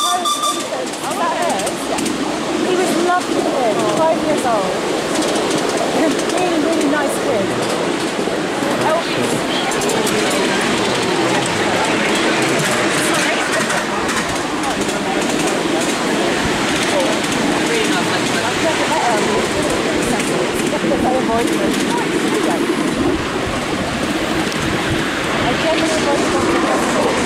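Steady running noise of a miniature railway train ride behind a miniature steam locomotive, with people's voices mixed in.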